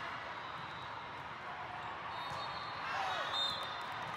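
Echoing hall noise of an indoor volleyball tournament: crowd chatter, volleyballs being hit and bouncing on the courts, and shrill whistle-like tones in the second half, with a shout about three seconds in.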